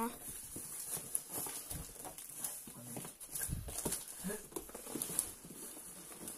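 A cardboard box being handled as a plastic-wrapped tent is worked out of it: irregular scraping and light knocks of cardboard, with two heavier thumps about two and three and a half seconds in.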